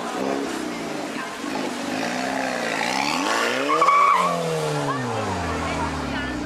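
KTM X-Bow's turbocharged four-cylinder engine revving as the car pulls away hard, pitch rising and dipping, then climbing to a peak about four seconds in with a short tyre squeal, and falling as the car drives off.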